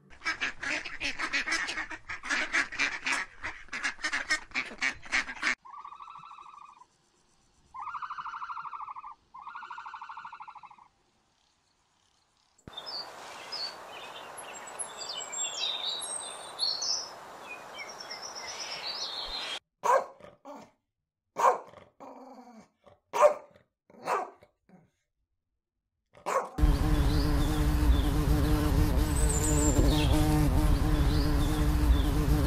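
A string of separate animal sound clips: rapid rasping animal calls, then three short honking calls, then a bird chirping over outdoor background noise and a few sharp calls. Near the end a bee starts buzzing loudly and steadily, the loudest sound of the stretch.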